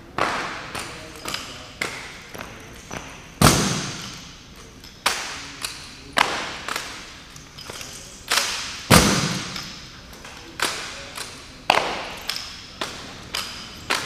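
Rifle drill: a rapid string of sharp clacks and slaps as rifles are spun, tossed and caught by hand, with a metallic ring after many of them, echoing in a large hall. Two heavier, deeper thuds land about three and a half seconds in and again about nine seconds in.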